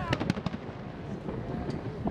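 Fireworks bursting and popping: a quick run of pops in the first half second, then scattered pops.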